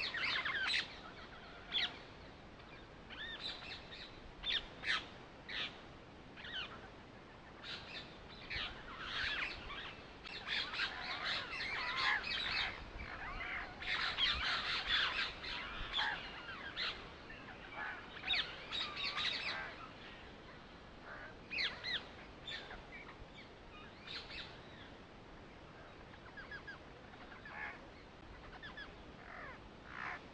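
Birds chirping: many short calls in busy clusters, densest in the middle and thinning out near the end.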